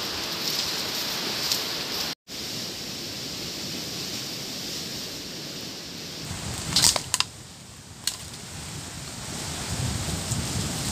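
Steady outdoor background hiss that cuts out for an instant about two seconds in, with a few sharp clicks around seven and eight seconds.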